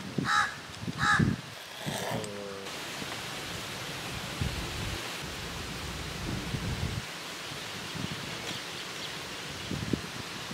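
A crow cawing three times in the first two seconds or so, then a steady background hiss.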